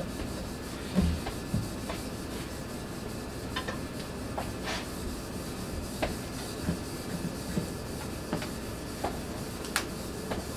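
Onions being peeled by hand: papery skins rubbing and crackling, with scattered light knocks of the onions on a wooden cutting board, over a steady background hiss.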